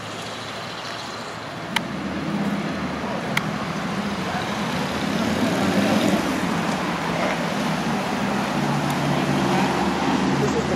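Steady road traffic noise with a low engine hum running throughout, broken by two sharp clicks about a second and a half apart.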